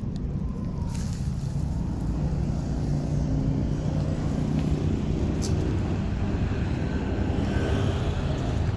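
A steady low rumble of a motor vehicle engine running, with a faint steady hum that joins about two seconds in.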